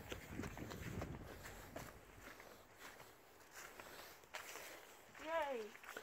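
Footsteps on a grass lawn with the rumble of a handheld camera being carried along, strongest in the first two seconds, and a short voice sound about five seconds in.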